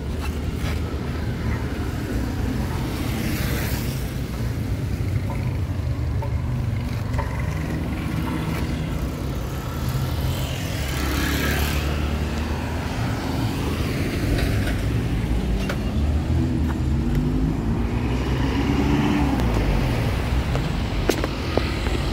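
Engine and road noise from a moving vehicle in city traffic. The engine note climbs and falls a couple of times, around the middle and again near the end, as the vehicle speeds up and slows.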